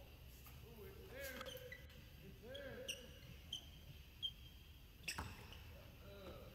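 Faint squeaks of basketball shoes on a hardwood court, a few short ones in the first four seconds, then one basketball bounce about five seconds in.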